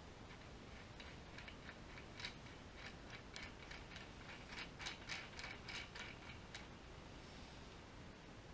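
Faint, irregular metal clicks and ticks from the nut and washers of a harmonic balancer installer being turned by hand on its threaded rod in the crankshaft nose. The clicks come several a second and are thickest in the second half.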